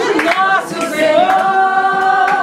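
Several voices singing together without instruments, holding one long note through the second half.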